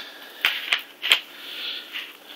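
Three short sharp clicks of hard plastic from the black plastic external hard-drive enclosure being handled.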